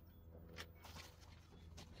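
Near silence between spoken phrases: a faint low steady hum with a couple of faint light ticks.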